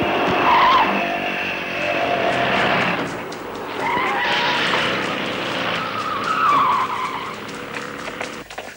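Car engines running, with three short, wavering tyre squeals as the cars skid.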